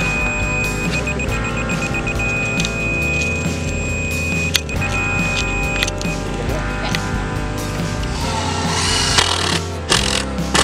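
Background music with a laser level receiver's high beep over it: a few quick beeps in the first two seconds, then a solid tone, the sign that the sonotube form is at the right height, which cuts off about six seconds in.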